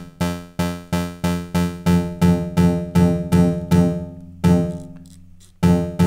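Teenage Engineering OP-1 synthesizer playing one note again and again, about three times a second, through its spring reverb effect with the spring's turns taken out, so it sounds more like a hall reverb. About four and a half seconds in the repeats stop and a last note rings out and fades, and the repeated notes start again near the end.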